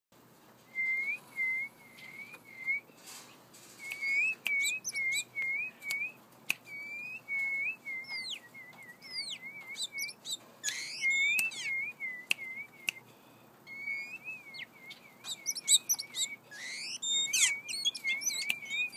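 Oriental magpie-robin calling: a long run of short whistled notes, some wavering and some sliding sharply up or down, in quick bursts with brief pauses.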